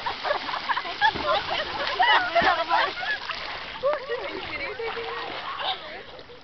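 Water splashing as a swimmer kicks and thrashes in a lake next to two people treading water, mixed with excited overlapping voices and shrieks that fade near the end.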